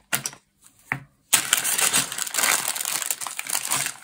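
Clear plastic polybags of LEGO parts crinkling as they are handled and pulled open: a few short rustles, then continuous crinkling from about a second in.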